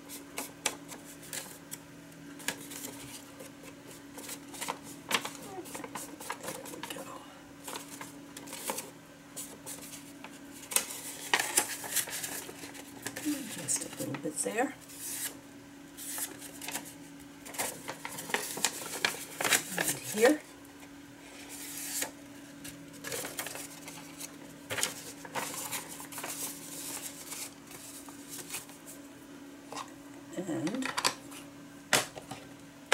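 Paper rustling and the light clicks and taps of plastic ink pads and craft tools being handled on a cutting mat, over a steady low hum.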